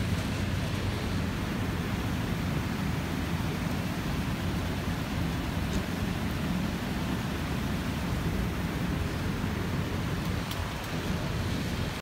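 Steady rain noise with wind buffeting the microphone, a wavering low rumble under an even hiss.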